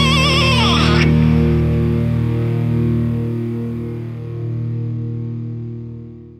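Closing bars of a heavy stoner-rock song. A distorted lead guitar line with wide vibrato stops about a second in, and the final chord is left ringing out on guitars and bass, fading away.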